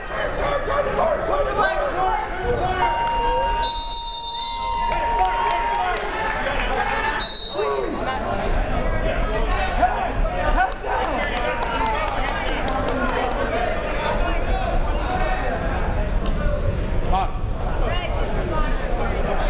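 Voices and shouts from the gym crowd and coaches throughout. A steady tone holds for about three seconds, and a referee's whistle blows about four seconds in and again about three seconds later, as the bout stops and the wrestlers separate. Occasional thuds are heard.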